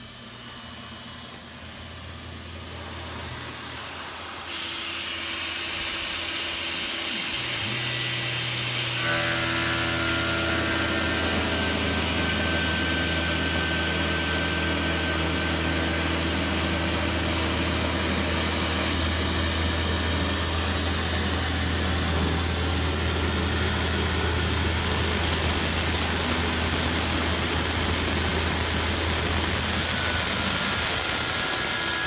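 Tormach PCNC 770 CNC mill's spindle and end mill running steadily while cutting a curved profile in quarter-inch steel plate, with a steady hiss from the nozzle aimed at the cutter. The hiss builds about four seconds in, and the machine's hum and tones settle in about nine seconds in.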